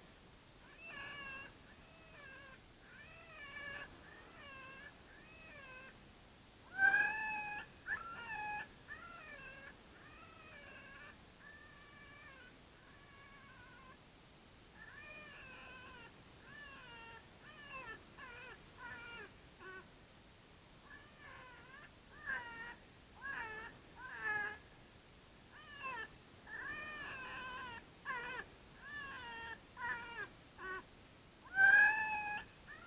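Electronic predator call playing an animal distress sound to lure coyotes: a long run of high, wavering cries, repeated every second or so and loudest about seven seconds in.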